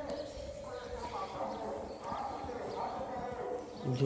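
Low voices talking, mixed with a run of light clopping knocks.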